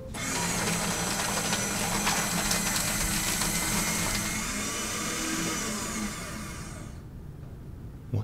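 Fellowes paper shredder running as sheets of paper are fed in and cut: a steady, loud motor grind that starts at once and stops about a second before the end.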